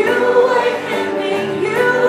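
A woman singing held notes into a microphone, backed by an electric guitar.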